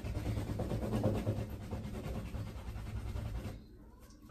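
Shaving brush working lather, a steady wet scratchy swishing of rapid brush strokes that stops about three and a half seconds in.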